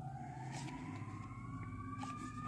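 Faint siren wail, one tone slowly rising in pitch.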